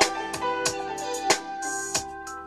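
Early demo of a slow, smooth R&B groove: a steady drum beat under held keyboard chords, with an electric guitar played live along with it.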